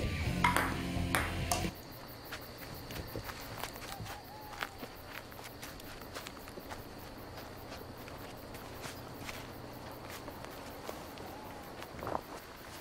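Ping-pong ball clicking off paddle and table a couple of times over party music, which cuts off suddenly about a second and a half in. Then quiet night-forest ambience with a low steady hum and faint scattered clicks.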